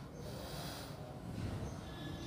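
Marker drawing a long curve on a whiteboard, with soft scratchy strokes about half a second in and again near the end, alongside close breathing and a low room hum.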